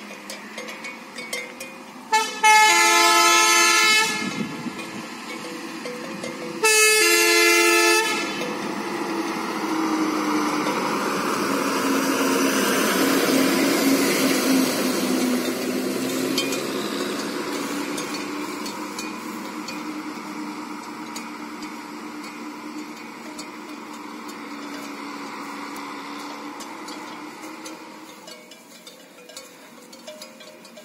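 TNSTC bus sounding its horn in two long blasts, the first about two seconds and the second about a second and a half, a few seconds apart. Its diesel engine then grows louder as the bus comes round the hairpin bend and passes, and fades away as it drives off.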